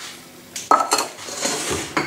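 Granulated sugar poured from a stainless steel measuring cup into a stainless steel saucepan. About two-thirds of a second in the cup clinks against the pan with a short ringing note. Then the grains hiss onto the metal for about a second.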